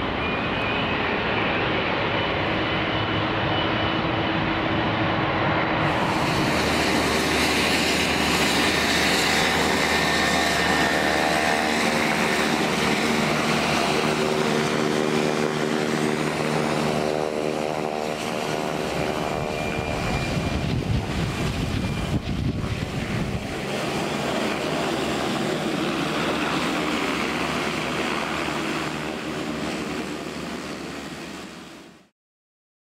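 Jet airliner engines on landing approach, then, after a cut about six seconds in, a Beech 1900D's twin turboprop engines running on the ramp. The propellers make a steady drone with a stack of steady tones, and a gusty low rumble comes through between about twenty and twenty-three seconds in.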